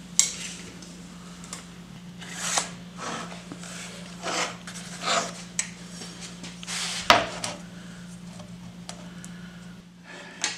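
Workshop handling sounds: scattered clicks, taps and short scrapes of a tape measure, a pencil and lumber being handled on the saw table, over a steady low hum. The sharpest click comes about seven seconds in.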